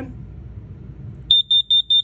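Safe-T-Alert RV carbon monoxide/propane detector sounding its alarm during a push-button test: loud, rapid high-pitched beeps, about five a second, that start just over a second in.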